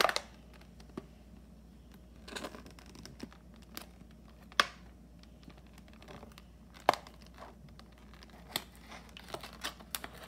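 Stiff clear plastic toy packaging crackling and crinkling as it is handled and cut with scissors, in a few separate sharp crackles with quiet stretches between.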